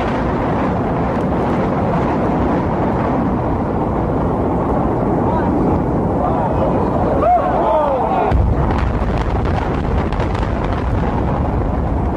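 Building implosion: a rapid run of demolition explosive charges cracking through a concrete and steel building, mixed with crowd voices and shouts. A deeper rumble joins about eight seconds in.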